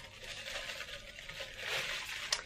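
Plastic bubble wrap rustling and crinkling as a ceramic pot is unwrapped by hand.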